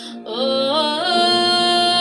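A woman singing: her voice climbs in a few steps to a long held high note.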